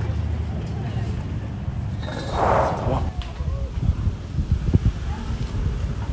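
Outdoor street ambience: a steady low rumble of wind on the microphone with indistinct voices of passers-by, and a brief louder rush of noise about two and a half seconds in.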